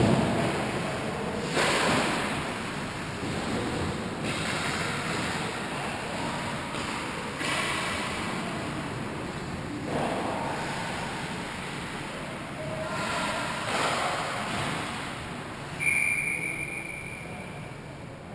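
Ice hockey game sounds echoing in an indoor rink: skate blades scraping and cutting the ice in bursts every few seconds, with a thump at the start. Near the end comes a short, steady, high whistle blast, typical of a referee stopping play.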